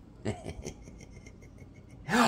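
Quiet room tone in a small room, with a few faint, short sounds in the first half-second.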